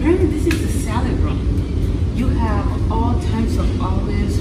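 A woman talking over a steady low rumble.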